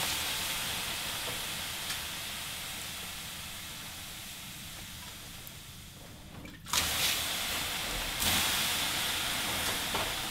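Steam hissing off hot sauna-stove stones as water hits them, the hiss slowly fading; about seven seconds in, a fresh dousing sets off a sudden, louder burst of hissing.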